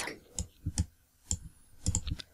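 A few faint, separate computer mouse button clicks, spaced irregularly, made while dragging items around on screen.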